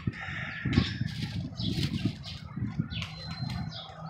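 Outdoor birds chirping and calling repeatedly in short calls, over a low background rumble.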